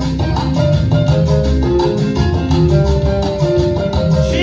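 Cuban salsa (timba) dance music playing: a repeating melodic riff over a full bass line and percussion at a steady dance beat.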